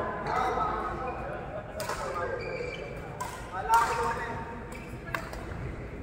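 Badminton rackets striking a shuttlecock during a doubles rally: a few sharp pops spread a second or more apart, echoing in a large hall.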